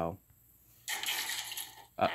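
About a second in, a second of noisy, hissy clatter without any voice starts up as the played-back video's audio begins.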